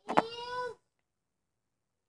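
A single short meow-like cry, lasting under a second, with a sharp click just after it starts.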